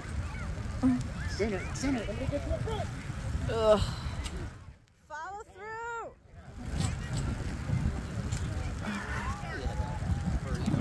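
Scattered distant shouts and calls from players and spectators at a youth soccer match, over a steady low rumble. The rumble briefly drops away about five seconds in, leaving one clearer call.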